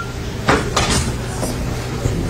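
Two short knocks, about half a second and just under a second in, over a steady low room hum.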